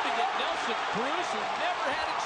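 Ballpark crowd noise: a steady din of many voices blended together, with no single sound standing out.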